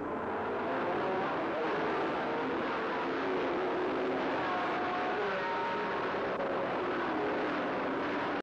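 A pack of Can-Am Group 7 sports racing cars with big, highly modified American engines running at race speed. It is a steady, dense engine sound with several engine pitches overlapping and gliding as cars go by.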